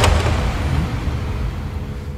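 A car passing close by, its low engine and tyre rumble fading away, after a sudden hit right at the start.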